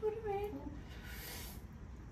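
A high, whimpering vocal sound falls in pitch and fades out in the first moment, a pained reaction to very spicy instant noodles. About a second in there is a short hissing suck of air through the mouth.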